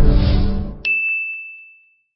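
The tail of a channel-ident music sting fading out, then a single bright electronic ding, a clear high tone that starts suddenly a little under a second in and rings away over about a second.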